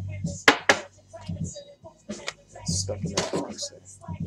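Trading cards and a pack wrapper being handled: a few sharp, brief crinkling scrapes, the strongest about half a second in, with a single spoken word near the end.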